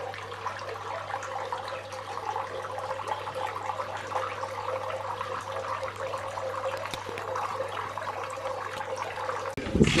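Water trickling steadily over a low, steady hum. Both cut off shortly before the end, and a man's voice starts.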